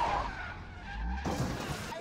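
Film sound of a car smashing through a glass building front: a loud crash of shattering glass and debris that fades away. A low rumble and a second burst of crashing follow about a second and a quarter in.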